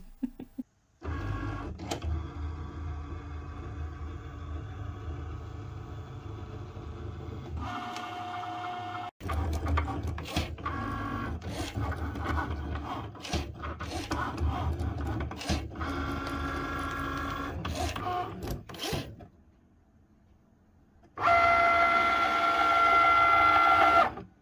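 Cricut Maker 3 cutting machine running a debossing pass with its QuickSwap debossing tip: steady motor whirring with a low rumble, broken by clicks. It goes nearly silent briefly near the end, then a louder, higher steady whine follows.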